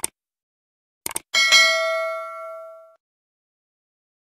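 Subscribe-button animation sound effects: a mouse click, a quick double click about a second in, then a bell ding that rings out and fades over about a second and a half.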